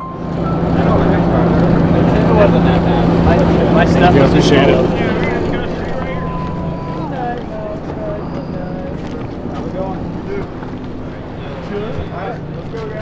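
Passenger ferry's engine running with a steady low hum under a noisy wash, loudest for the first few seconds and then easing off somewhat. Voices of people around it come and go.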